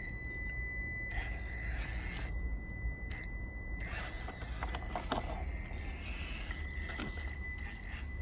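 Traxxas TRX4M 1/18 mini crawler climbing over rocks: its small electric motor and gears whine steadily at low throttle, with scattered clicks and scrapes as the tyres and chassis work over the stones.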